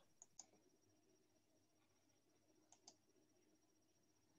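Near silence broken by two faint computer mouse double-clicks, one just after the start and one near three seconds in, over a faint steady high whine.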